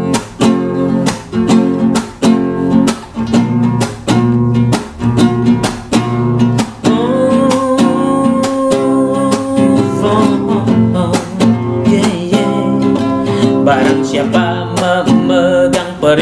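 Classical guitar strummed in a steady rhythm as the introduction to a song, several strokes a second. About halfway through, a voice hums one long held note over the strumming for a few seconds.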